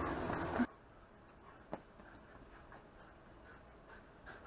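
A louder noise stops abruptly just under a second in, leaving faint backyard ambience. In it there is one sharp click, then a few fainter ticks.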